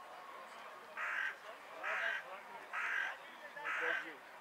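A crow cawing four times, harsh calls roughly a second apart, over faint distant voices.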